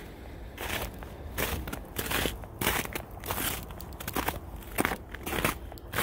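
Footsteps crunching in snow, a regular walking pace of about two steps a second.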